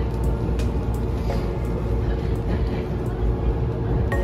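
Steady low rumble of a moving commuter train heard from inside the carriage, with background music over it.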